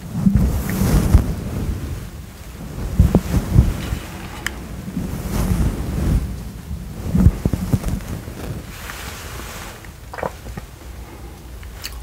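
Soft makeup brush stroked over the microphone: an uneven run of brushing strokes, heard mostly as a low rumbling swish that swells and fades again and again.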